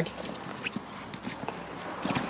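Rustling handling noise of a waterproof roll-top dry bag being opened up by hand, with a few soft clicks from its buckle and straps.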